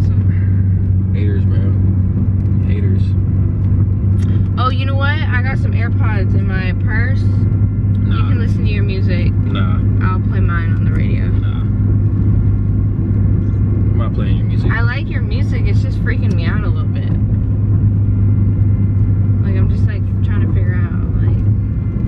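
Steady low drone of a car's engine and road noise heard inside the cabin while driving, with a voice coming and going over it in short stretches.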